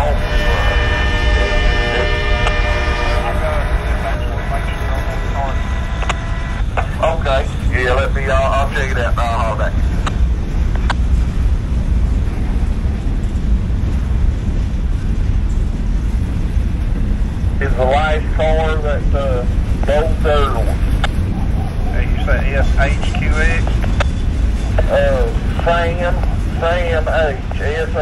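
Freight train of tank cars and covered hoppers rolling past: a steady low rumble of wheels on rail. A steady pitched tone sits over it for the first three seconds.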